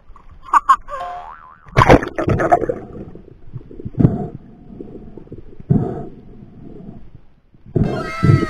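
Speargun fired underwater: a loud sharp twang about two seconds in, followed by two more knocks as the spear and its line run out.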